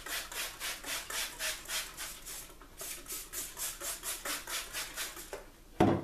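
Trigger spray bottle misting water onto a paper-towel sheet: a quick run of hissing squirts, about four a second, with a brief pause around the middle. A knock near the end as the bottle is set down.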